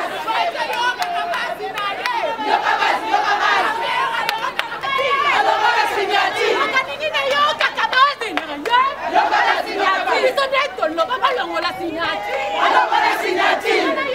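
Excited crowd of women shouting and cheering together, many voices overlapping.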